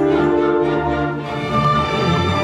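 A full orchestra, strings to the fore, playing a scored television music cue in sustained chords over a low bass line; a higher held note comes in near the end.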